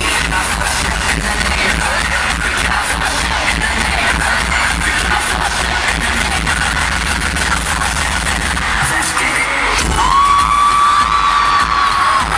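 Loud live pop music with heavy bass, played through a concert sound system and recorded from the audience. About ten seconds in, a long held high note comes in over it.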